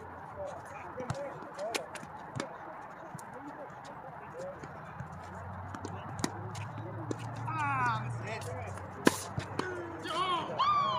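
Tennis balls popping off racket strings and bouncing on a hard court during a doubles rally: a string of sharp, separate hits, the loudest about nine seconds in.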